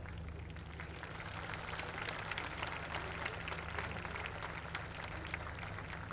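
Audience applauding, a dense patter of clapping that grows a little louder after the first second, over a steady low hum.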